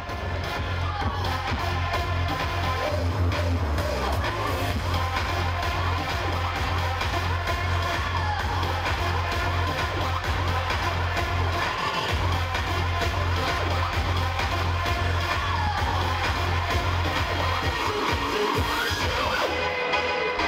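Electronic dance music from a DJ set over a PA, with a heavy, steady bass line. The bass drops out briefly about twelve seconds in and again near the end.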